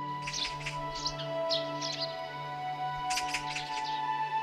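Bird chirps over a soft background score with long held notes: a quick run of chirps in the first two seconds, then another short burst near the end.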